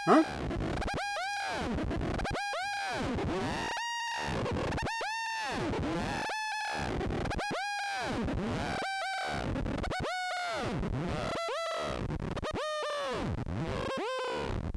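A Eurorack modular synthesizer patch built around Make Noise Maths envelopes, playing repeated laser-like "piou" pitch sweeps about one every 1.2 s. Each note swoops up, holds briefly and falls. A running step sequencer changes the peak pitch from note to note.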